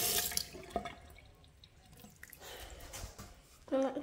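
Thin stream of tap water running from a bathroom faucet onto the sink's drain stopper. It is loudest in the first half second, then drops to a faint trickle.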